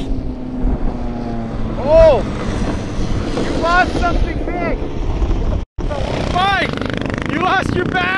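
Two-stroke shifter kart engine revving up and falling away again and again as the kart is driven and shifted. The pitch rises and falls in arcs, with a brief break in the sound near the middle.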